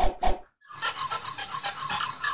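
Logo-animation sound effects: three quick sharp hits, then a busy run of short high-pitched notes repeating about five times a second.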